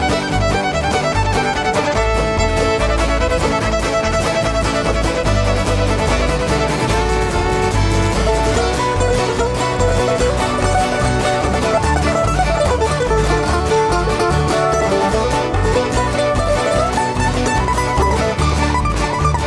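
Live country-bluegrass band playing an instrumental break between verses: a fiddle carries a sliding melody over guitar and a steady bass beat.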